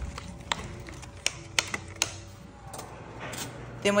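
Metal spoon clicking against a glass baking dish while stirring a thick mix of oats, mashed banana and blueberries: a few sharp, scattered clicks over a soft scraping.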